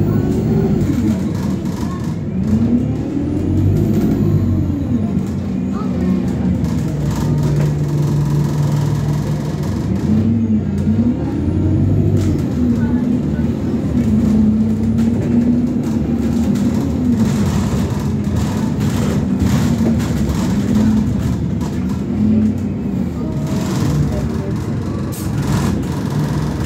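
A bus's engine and drivetrain heard from inside the passenger cabin while it drives along: the pitch rises and falls repeatedly as the bus speeds up and slows down, over steady road noise.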